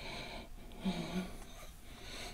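A man's faint breathing, with a short low hum about a second in.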